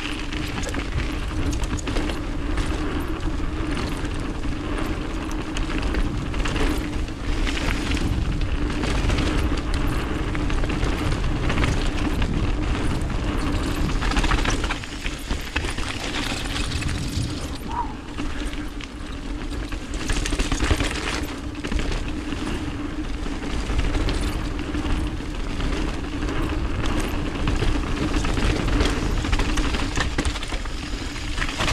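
Mountain bike descending a dirt trail, heard from a camera mounted on the rider: wind buffets the microphone, knobby tyres roll on packed dirt and gravel with a steady low hum, and the bike rattles and knocks over bumps throughout.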